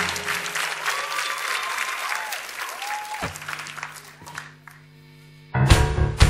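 Studio audience applauding and cheering, dying away over the first four seconds. A low held synth note comes in about three seconds in. Near the end, the song's intro beat starts abruptly with loud, sharp strokes about twice a second.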